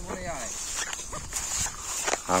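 A person's voice, brief and falling in pitch, in the first half-second, with weaker scraps of voice after it, over a steady high-pitched drone.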